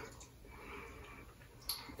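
Faint mouth sounds of a person eating, licking fudge from a fingertip, with one small sharp click near the end.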